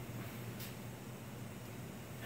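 Faint steady low hum and hiss from an idle bass combo amplifier.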